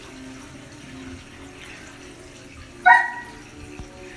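Steady running and trickling of water circulating through a reef aquarium's overflow and sump. About three seconds in there is one short, high whine.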